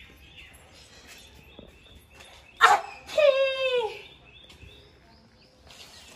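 A sudden sharp burst about two and a half seconds in, followed by a drawn-out wordless vocal cry that falls in pitch, from a person's voice.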